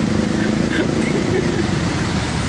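A motor engine running steadily, with faint voices underneath.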